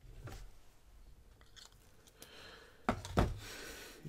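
Faint handling of a broad-nib Lamy 2000 fountain pen: the nib briefly scratches on paper as a letter is finished, then two sharp clicks come close together about three seconds in.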